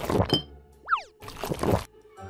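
Cartoon sound effects over light background music: two short hits near the start, then a quick up-and-down pitch glide, a cartoon boing, about a second in.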